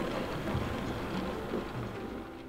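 H0-scale model of the Crocodile electric locomotive 14253 running along the track: a steady rumble of motor and wheels on rails that grows slowly fainter as it passes.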